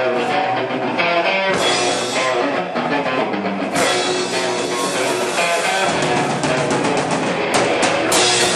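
Live rock band playing loud: distorted electric guitars over a drum kit, heard close up from among the crowd in a small room.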